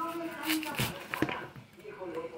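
A kitchen knife scraping kernels off a tender ear of fresh corn, in a few quick strokes in the first second or so. A woman's voice is heard briefly at the start.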